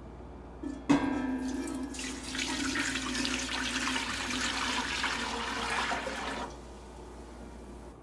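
White vinegar poured from a glass measuring cup into a stainless steel pot: a light knock about a second in, then a steady splashing pour that stops about six and a half seconds in.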